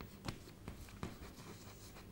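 Chalk writing on a chalkboard: a few faint, short taps and scratches as characters are written.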